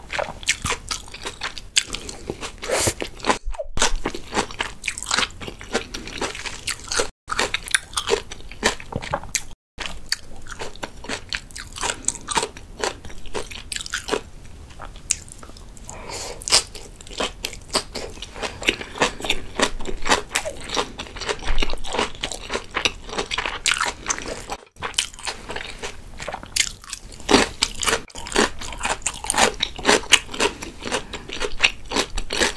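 Close-miked chewing of salmon sushi: a dense run of quick wet clicks and crunchy mouth sounds, broken by a few very short gaps of silence.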